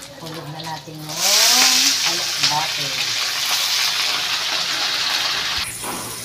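Stir-fry in a wok: a loud sizzle starts about a second in, as wet leafy greens go onto the okra in the hot pan. It holds steady for about four seconds and cuts off near the end.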